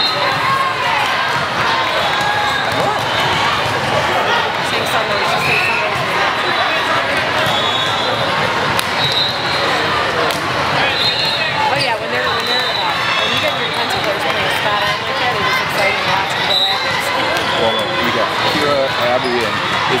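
Steady din of a large hall full of volleyball courts: many voices chattering and calling, with balls struck and bouncing on the hard floor. Short, high referee whistle blasts cut through several times.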